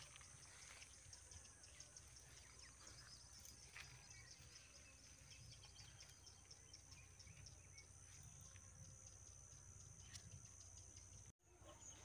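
Near silence: faint outdoor ambience with a steady high insect drone and a faint low rumble. A brief gap in the sound comes about half a second before the end.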